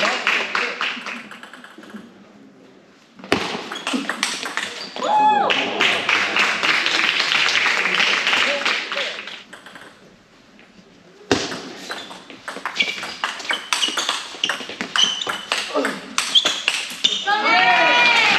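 Table tennis rallies: the ball clicking quickly back and forth off the rackets and the table, with voices calling out around 5 seconds in and again near the end. The sound fades and then starts again abruptly twice.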